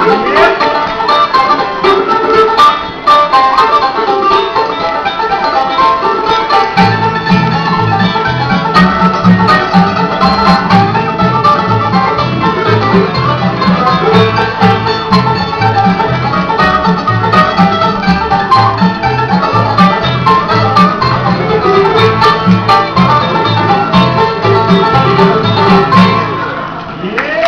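Live bluegrass band playing an instrumental passage on banjo, acoustic guitars, mandolin and upright bass, with the banjo out front. About seven seconds in, a steady, evenly pulsing low bass line comes in under the picking.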